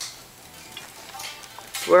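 Ibanez seven-string electric guitar played softly, with faint picked notes and string and handling noise. Near the end a voice loudly asks "Where are you?"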